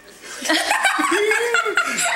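Laughter, starting about half a second in as a run of short, choppy laughs.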